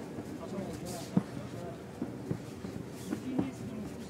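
Fight-arena background during an MMA bout: a low murmur with scattered faint shouts from the crowd or corners, and one sharp knock about a second in, with a few lighter knocks later, typical of strikes or footwork in the cage.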